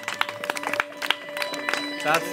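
Scattered audience clapping after a live band's last song, with a few steady tones held underneath.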